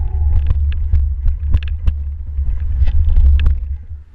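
Heavy low rumble of riding vibration and wind on a mountain bike's camera, with irregular clicks and knocks as the bike rattles over the snowy trail. It falls away sharply near the end.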